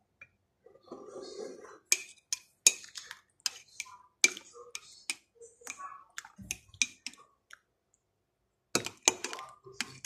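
A spoon clinking against the inside of a ceramic mug of tea as it is stirred: light, irregular clinks about two a second, with a pause of about a second near the end.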